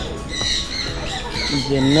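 Many birds chirping and calling in the trees, short repeated high calls overlapping. About one and a half seconds in, a low, held man's voice comes in over them and is the loudest sound.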